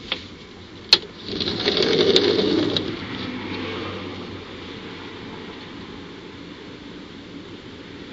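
A sharp click about a second in, then the rush of a vehicle passing by, swelling to a peak about two seconds in and fading away over the next few seconds.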